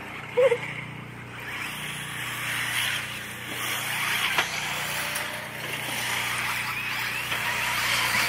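Distant 1/8-scale nitro RC buggy engines (Alpha Dragon 4) buzzing as the buggies lap, the high whine rising and falling with throttle. A single sharp click sounds about four seconds in.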